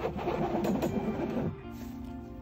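Background music with sustained tones. Under it, for about the first second and a half, a dense scraping as a squeegee drags thick white screen-printing ink across the silk-screen mesh, then it stops.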